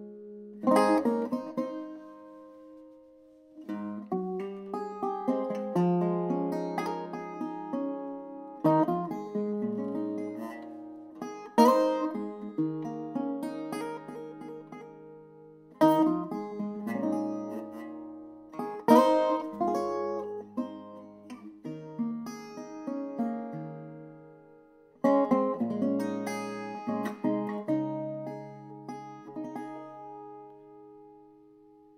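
Solo acoustic guitar playing the instrumental introduction to a folk song: chords struck hard about every three seconds and left to ring, with picked notes in between.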